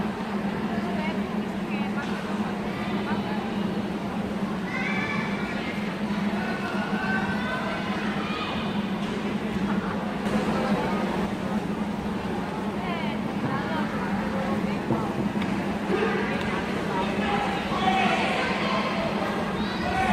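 Indistinct chatter of many spectators and officials in a large indoor hall, over a steady low hum; no single voice stands out.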